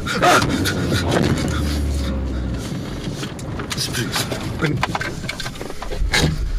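Car interior: a low engine and road hum that stops about two and a half seconds in, with scattered clicks and rustling and an indistinct voice.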